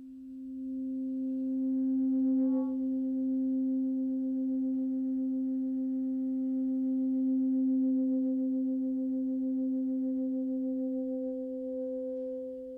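Soprano saxophone holding one long, nearly pure low note that swells in over the first couple of seconds and then stays steady.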